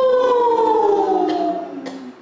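A man's long held vocal tone, sung as a vibration kriya exercise: one sustained note that rises slightly, then slides slowly down in pitch and fades out near the end.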